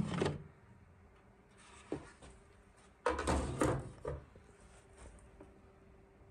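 Plastic lid of a Vitamix FoodCycler FC-50 food recycler being turned to unlock and lifted off. There is a short scrape at the start, a single click about two seconds in, and a louder second-long bout of plastic handling noise about three seconds in, followed by a few light taps.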